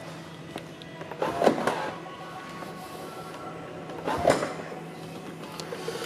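Boot lid of a 2005 Bentley Arnage being released and lifted open, with two short louder sounds, about a second and a half in and just after four seconds, over quiet background music.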